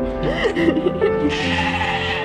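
A sheep bleating, with a short wavering call in the first second, over background music.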